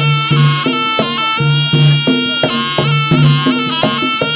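Jaranan gamelan music: a reedy shawm-like trumpet (slompret) plays a sustained, wavering melody over a steady beat of drums and low gong-like pulses.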